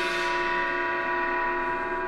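A sustained, bell-like ringing chord from the drama's soundtrack, fading slowly. It is a transition sting laid over the cut into a flashback scene.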